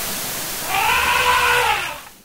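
A single drawn-out animal call lasting about a second, rising then falling in pitch, over a steady hiss.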